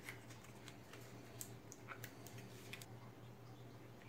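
Faint, scattered light clicks and ticks of a clear plastic clamshell package being handled, over a faint steady low hum.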